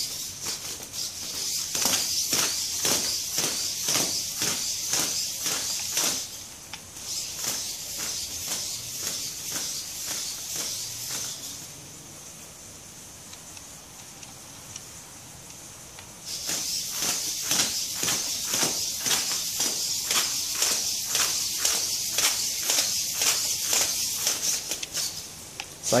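Hobby servos of a 3D-printed hexapod robot whirring as it walks, with a fast run of ticks from its plastic feet and joints on concrete. The sound breaks off briefly about six seconds in, stops for about four seconds in the middle, then starts again.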